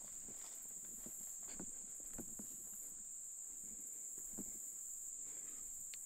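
A steady, high-pitched insect chorus, with faint irregular footsteps through brush and leaves.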